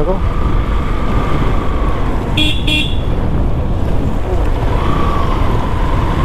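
Motorcycle running steadily under way, its engine mixed with road and wind rumble. About two and a half seconds in, a vehicle horn gives two quick beeps.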